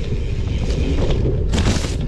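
Mountain bike ridden fast over a dirt forest singletrack, heard through a bike-mounted action camera: steady wind rumble on the microphone with tyre noise and small knocks and rattles from the bike over the rough ground, and a brief louder burst of noise near the end.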